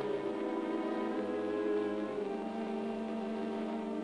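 Cartoon background music: sustained, held chords that shift to new notes about halfway through.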